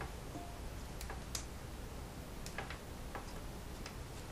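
Autumn olive berries being plucked by hand from their stems over a glass bowl: scattered light clicks and ticks, sometimes two or three in quick succession.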